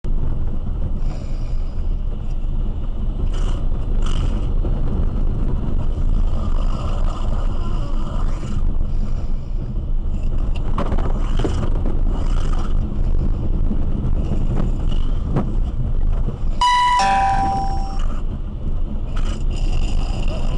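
Road and tyre rumble inside a moving SUV with no one at the controls, with intermittent hissing scrapes as its body rubs along the concrete median barrier. About 17 seconds in, a short two-note electronic chime falls in pitch.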